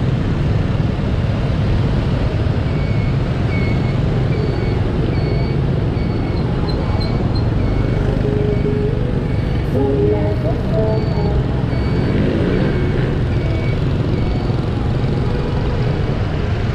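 Steady rumble of a motor scooter riding through dense city traffic, with wind and the engines of surrounding motorbikes and cars. A faint short high beep repeats regularly, about once every 0.8 s, through most of it.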